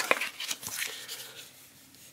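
Paper pages of a user manual being handled and turned: a few short rustles and light clicks that die away about a second and a half in.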